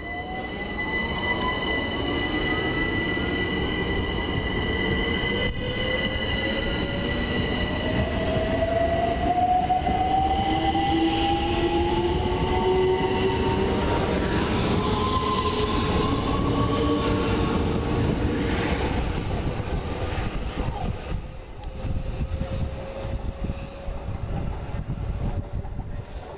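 Class 376 Electrostar electric multiple units accelerating away from the platform: the traction motors whine in several tones that rise steadily in pitch as the train gathers speed, over the rumble of wheels on the rails. The sound eases off near the end as the train draws away.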